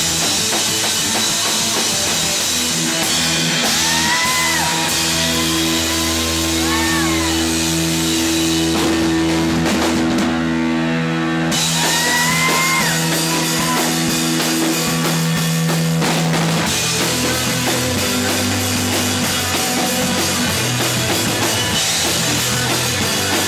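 A rock band playing loud and dense: distorted electric guitar over a drum kit. About ten seconds in, the cymbals drop out for a second or so, then the full band comes back in.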